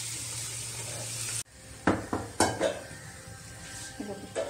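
Arbi (taro root) frying in oil in a kadai, sizzling steadily while being stirred with a spatula; the sizzle cuts off abruptly a little over a second in. After it come several sharp clinks and knocks of dishes, each ringing briefly.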